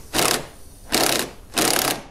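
Cordless power driver spinning a socket in three short bursts, the last one the longest, loosening the bolt of an AC line fitting on the condenser.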